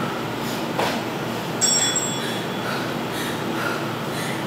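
A short high chime, like a workout interval timer signalling a change of exercise, rings about a second and a half in and fades within about half a second. Earlier, one thud of feet landing on a tiled floor stands out over a steady background hiss.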